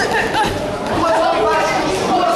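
Many overlapping voices of spectators chattering and calling out, with no single voice standing clear.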